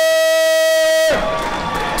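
A ring announcer's long, drawn-out call on a boxer's name, held on one steady pitch and breaking off about a second in, with the crowd cheering under and after it.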